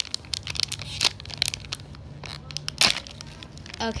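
Crinkly plastic packaging being handled and torn open by hand: irregular crackling with a few sharper rips.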